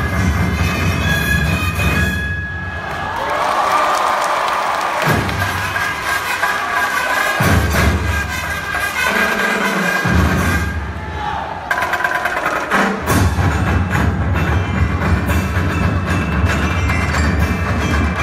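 Loud festival dance music with a heavy drumbeat, played for the dancers over the field's sound system. The beat drops out for short breaks several times, and a sustained gliding tone fills the first break.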